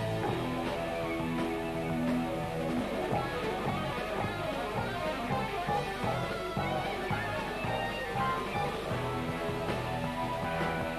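Live rock band playing an instrumental passage on electric guitar, bass guitar, drums and keyboards, with the electric guitar out front. The first few seconds are held notes, then the playing breaks into fast runs of notes.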